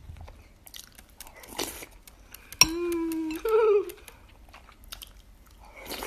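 A person eating soup from a spoon: small chewing and mouth clicks, with a slurp from the spoon about one and a half seconds in and another near the end. About two and a half seconds in, a short closed-mouth hum, "mm", lasting about a second.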